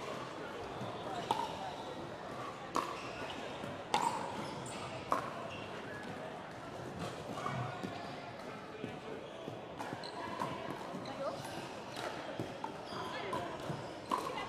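Scattered sharp pops of pickleball paddles and balls from games on neighbouring courts, a few seconds apart, over low voices echoing in a large sports hall.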